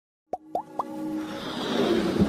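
Animated logo intro sting: three quick rising 'bloop' pops about a quarter second apart, then a whoosh that swells steadily, leading into electronic music.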